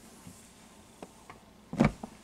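Faint rubbing of a microfibre cloth wiping a clear plastic turntable dust cover, with a couple of small clicks about a second in.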